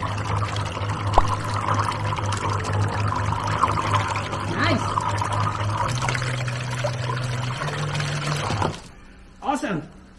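Small electric outboard motor running with its propeller submerged in a bucket, churning and splashing the water over a steady electric hum. The hum steps up in pitch twice as the speed rises, then cuts off about a second before the end. The motor is now spinning in the right direction after two of its wires were swapped.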